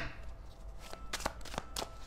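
A tarot deck being shuffled by hand: a quiet run of soft, irregular card clicks.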